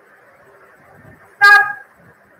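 A single short, loud, horn-like pitched tone, lasting under half a second, about a second and a half in.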